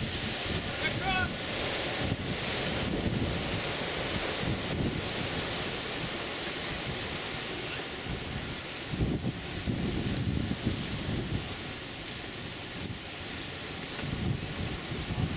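Wind buffeting the camera microphone, an uneven low rumble that swells and eases, with a few faint chirps about a second in.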